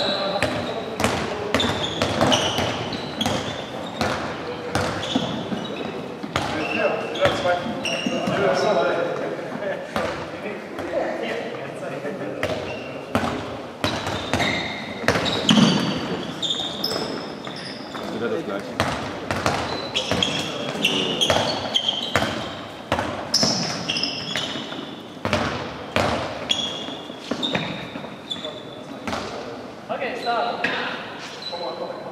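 Handballs bouncing again and again on a wooden sports-hall floor, echoing in the large hall, with voices and short high squeaks among the bounces.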